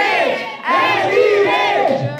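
Crowd of spectators shouting and yelling together in answer to a ring announcer's question.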